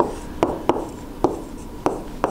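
A stylus writing on an interactive touchscreen board: about five sharp taps as the pen tip meets the screen, irregularly spaced, with short scratchy strokes between them as the letters are drawn.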